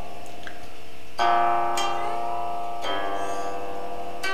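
Guqin being plucked slowly: new notes sound about a second in, just before two seconds and near three seconds, each left to ring on with long sustain.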